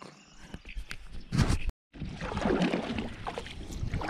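Kayak being paddled: water swishing and splashing from paddle strokes, with wind on the microphone. Before that, about a second and a half in, a single loud thump, and then a short break in the sound.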